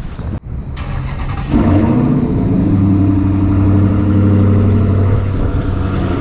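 Supercharged 6.2-litre HEMI V8 of a Dodge SRT Hellcat. It comes in loud about a second and a half in, then runs steadily with a low, even note.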